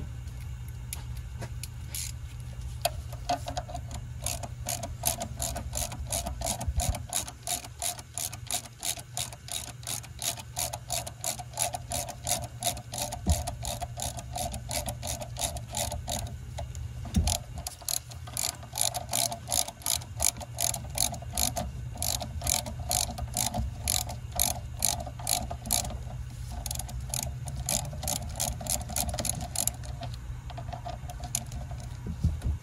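Hand ratchet clicking in short, even strokes, about two to three clicks a second, as it turns the screw of a valve spring compressor on a Dodge 4.7-litre V8's cylinder head. It stops briefly a little past halfway, then carries on. A steady low hum runs underneath.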